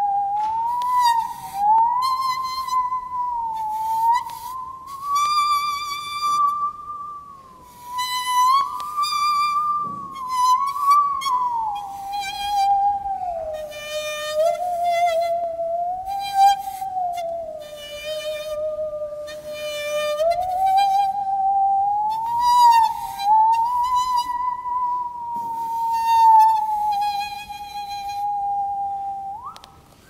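A musical saw, a hand saw bowed so that its blade sings, playing a slow melody: a single wavering tone with vibrato that glides smoothly from note to note.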